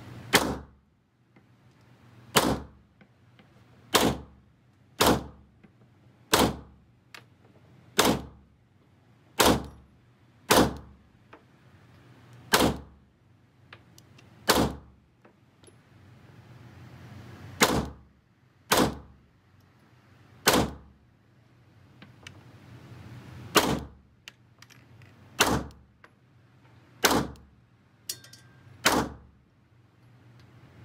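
Glock G17 Gen5 9mm pistol firing seventeen single shots at a slow, deliberate pace, about one to two seconds apart with a longer pause about halfway through, emptying a 17-round magazine. Each shot is a sharp crack with a short echo.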